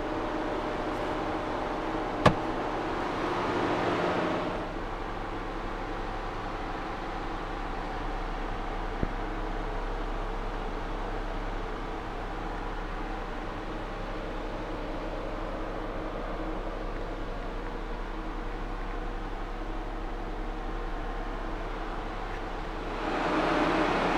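Steady low mechanical hum, with a sharp click about two seconds in and a fainter click near nine seconds. The hum swells briefly around four seconds and again just before the end.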